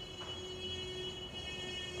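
A pause in speech: faint, steady high-pitched tones, with a fainter low tone beneath, over quiet background noise.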